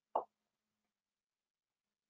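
A single short, soft pop just after the start, then near silence.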